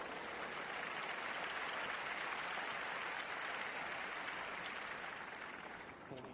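Tennis crowd applauding a won point, steady and then dying away near the end.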